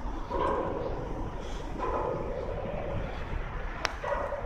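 A dog barking twice over a low outdoor rumble, with a single sharp click near the end.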